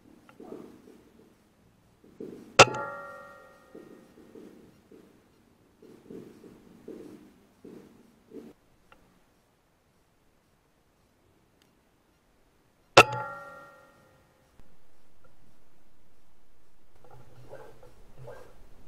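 Two shots from an Air Arms S510 .177 sub-12 ft/lb PCP air rifle, about ten seconds apart. Each is a sharp crack followed by a ringing tone that dies away over about a second. A steady hum comes in a few seconds before the end.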